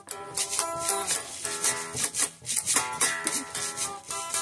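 Red Stratocaster-style electric guitar played as a blues tune, picked notes and strummed chords with sharp, bright pick attacks every quarter to half second.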